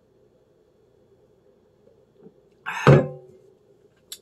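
A sharp breath out after a long swallow of beer, followed at once by a heavy glass beer mug set down on a table with a single loud thunk, nearly three seconds in.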